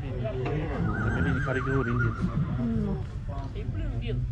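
A stallion whinnying once, about a second in: one quavering high call lasting just over a second that sags slightly in pitch at its end.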